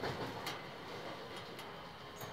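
Faint background noise inside a train car, with a few light clicks.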